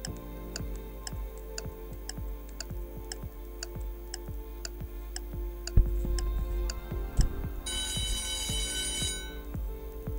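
Countdown-timer sound effect: a clock ticking steadily over background music, then an alarm ringing for about a second and a half near the end as the time runs out.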